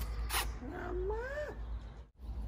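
A single short, sharp snip about half a second in as garden scissors cut through a thick Chinese kale stem, followed by a woman's drawn-out exclamation.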